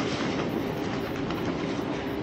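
Steady low background rumble and hiss with no speech and no distinct events.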